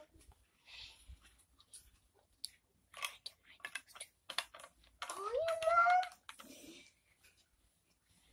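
Light clicks and rustles of small things being handled by hand, with a brief rising voice-like sound about five seconds in.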